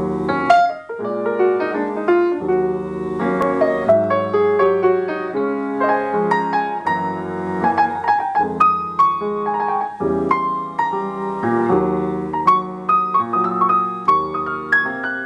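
Grand piano played solo: sustained chords over deep bass notes, changing every second or two, with a melody line moving above them.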